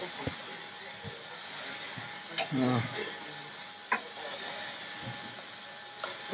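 A short, low vocal sound from a person, falling in pitch, about two and a half seconds in, over a steady hiss with a faint steady tone and a few brief clicks.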